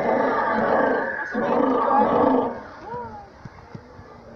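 Animatronic pterosaur model sounding a recorded roar through a loudspeaker: two long, loud calls with a short break between them, which stop about two and a half seconds in.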